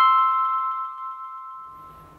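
Closing note of a channel intro jingle: a single bell-like chime struck at the start, ringing out and fading away over about a second and a half.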